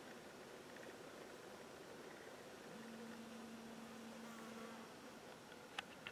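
Faint buzz of a flying insect, a steady hum that comes in about three seconds in and lasts about two seconds, over a quiet outdoor background. A single sharp click near the end.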